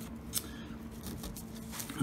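Paper being handled: a sheet of paper with coins taped to it and a torn envelope rustle and crinkle quietly, with a few small sharp crackles, one a little louder about a third of a second in.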